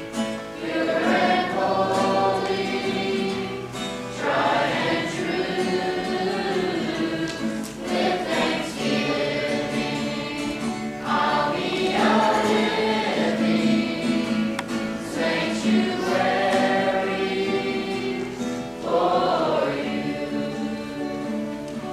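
Youth choir of mixed voices singing a slow worship song in long phrases, accompanied by acoustic guitar.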